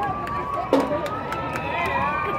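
Marching band drum keeping a steady marching beat between tunes, one stroke about every second, over crowd chatter.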